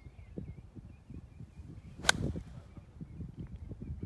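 A golf club strikes a golf ball once, a single sharp crack about two seconds in.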